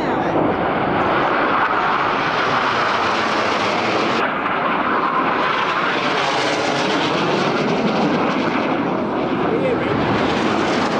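Red Arrows BAE Hawk jet trainers flying low overhead, their turbofan engine noise coming in suddenly and staying loud as they pass.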